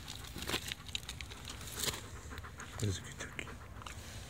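Dog panting and sniffing right at the microphone, with scattered small clicks and crunches of movement on gravel.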